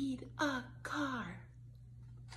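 A woman's voice: two short vocal sounds, each falling in pitch, in the first second and a half, then a quiet room.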